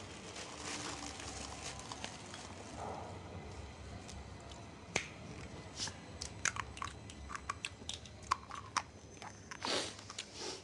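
Faint eating sounds: scattered light clicks and taps of cutlery and tableware, sparse at first and more frequent in the second half, over low steady background noise.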